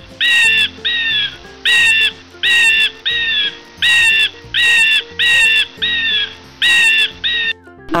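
Eagle calls: a steady run of short, high cries, about one and a half a second, each bending down slightly at the end, over soft background music.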